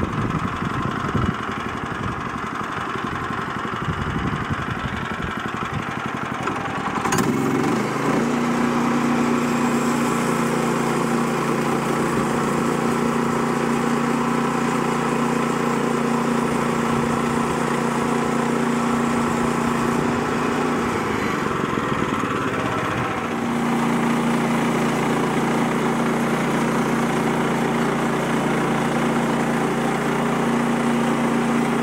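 Woodland Mills portable bandsaw sawmill's gas engine running roughly at low speed. About 7 seconds in it is throttled up to a steady high speed, driving the band blade through the log. It sags briefly about two-thirds of the way through, then steadies again.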